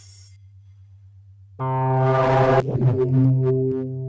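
Experimental synthesizer music. A quiet low pulsing hum runs for about the first second and a half. Then a loud layered synth chord enters with a rush of noise, and settles into steady stacked drone tones with small clicks.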